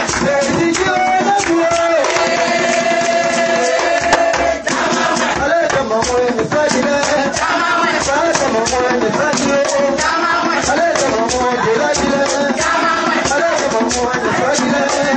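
Singing accompanied by shaken rattles and drums keeping a steady, quick beat.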